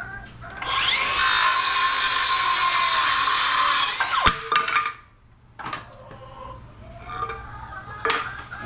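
Makita cordless circular saw spinning up and cutting through a one-by-four board for about three seconds, then winding down with a falling whine. A wooden knock follows a little later. The owner reckons the saw's battery is getting low.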